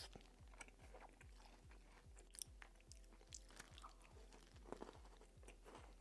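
Faint chewing of a mouthful of Oreo cookie, with a few small crunches.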